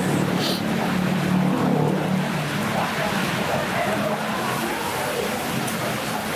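Steady hiss of heavy rain, with faint voices underneath.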